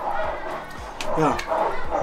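A man briefly says "ja" over a background of children's voices and noise from nearby, which he calls a racket ("Krach").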